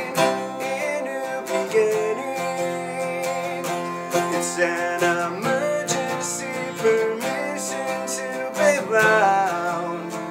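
Acoustic guitar strummed steadily through an instrumental stretch of a punk-rock song, chords ringing on between strokes.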